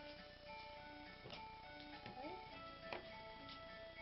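Faint background music of soft held notes, with a couple of light clicks.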